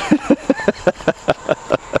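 A man laughing: a long, even run of short 'ha' pulses, about five a second.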